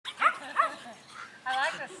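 Two quick, high-pitched barks from a Shetland sheepdog in the first second, excited during a game of ball.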